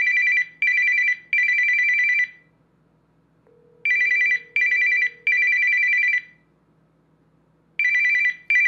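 Samsung Galaxy phone's ringtone sounding for an incoming call: a high beeping tone in groups of three, two short beeps and one longer, with each group repeating about every four seconds.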